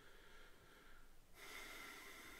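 Near silence: room tone, with a faint breath through the nose starting a little past halfway in.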